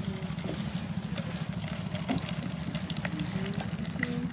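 Coconut milk dribbling and splashing from a hand-squeezed fistful of grated coconut into a plastic colander, with faint scattered drips over a steady low hum.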